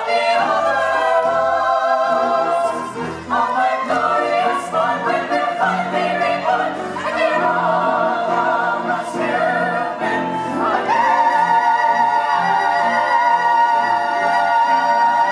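A stage-musical cast singing together in full voice over a pit orchestra, building to a climax; about three quarters of the way through they rise onto one long held final chord.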